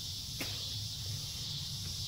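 Quiet outdoor background: a steady high-pitched insect chorus, with one faint click about half a second in.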